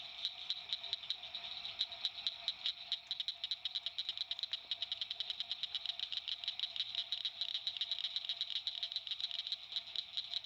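A dense chorus of small calling animals: rapid, high clicks repeating steadily, over a fainter, lower steady band of calls.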